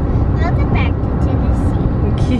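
Steady road and engine rumble inside a minivan cabin at highway speed, with a child's voice briefly about half a second in.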